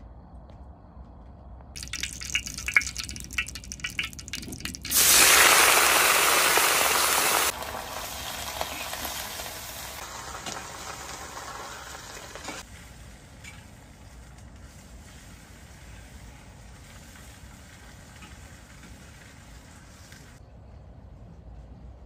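Hot oil crackling and popping with sharp clicks, then a sudden loud sizzle about five seconds in, as when food goes into a hot wok, dying down in steps over the next several seconds.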